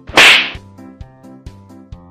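A single loud, sharp slap-like smack near the start, over background music with a steady beat.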